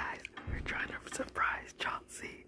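A girl whispering softly and breathily close to the microphone, with a few light clicks.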